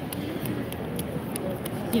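Indistinct chatter and the general hum of a large, busy convention hall, with no close voice.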